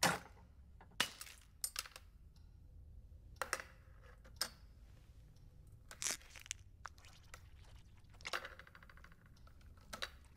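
Sharp cracks and crunches from a spoon working at the shell of a soft-boiled ostrich egg. The strokes come singly, about one a second, with a denser crackling run near the end.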